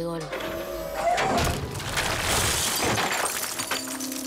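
A loud, prolonged crash of things breaking and shattering from a film soundtrack. It starts about a second in, lasts about two and a half seconds and dies away near the end.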